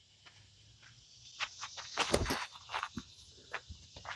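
Footsteps on grass during a disc golf run-up and throw: a string of short, quiet scuffs, loudest about two seconds in.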